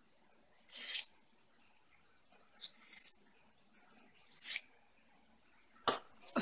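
Steel knife blade drawn across a handheld diamond sharpening plate in three short scraping passes, each a brief hiss, a little under two seconds apart.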